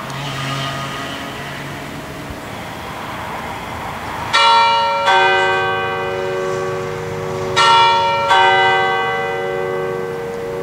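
Swinging church bells from the Eschmann peal of 1967 beginning to ring, the first strokes coming about four seconds in. Four strikes follow in two pairs, each one ringing on and overlapping the next, above a steady hiss of road traffic.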